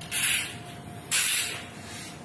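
Two short sprays of sanitizer, each about half a second long and about a second apart.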